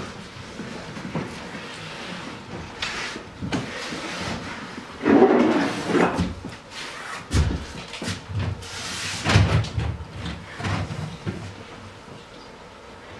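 Irregular scuffs, bumps and thuds of a person crawling across a stage floor and climbing onto a bench, the louder knocks clustered about five seconds in and again near nine seconds.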